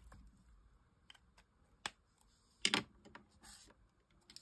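Faint, scattered clicks and taps from handling a Promarker alcohol marker over paper, with a louder click about two-thirds of the way through.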